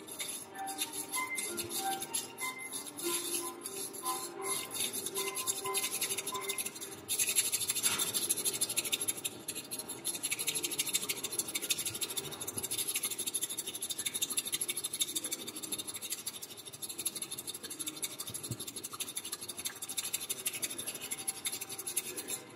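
Bamboo matcha whisk (chasen) whisked rapidly in a ceramic tea bowl, a fast continuous scratchy brushing that gets louder about seven seconds in. Soft background music with a melody plays under it, clearest in the first few seconds.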